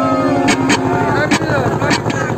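Voices calling out over the steady running of a motorboat engine and the rush of water along the hull.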